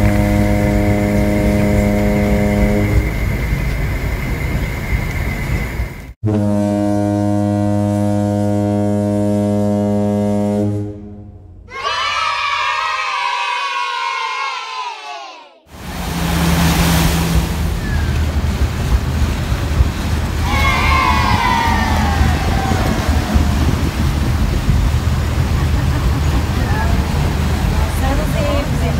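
Paddle steamer's whistle sounding in two long, low, steady blasts, followed by a wavering tone that falls in pitch. After that there is a steady low rumble of the boat running on the river.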